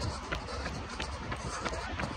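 Running footsteps on a wet paved path, about three strides a second, over a low steady rumble.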